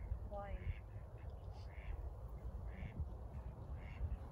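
Waterfowl on a pond calling in a string of short, quack-like calls, about one every half second to a second, over a low steady rumble.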